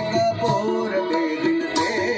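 Live garba music: an electronic keyboard playing a melody over hand-drum strikes.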